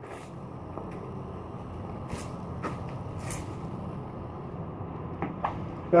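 Steady low background noise with a few faint, short clicks and taps scattered through it.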